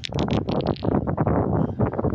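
Wind buffeting the microphone: an irregular, gusty noise that starts suddenly and stays loud.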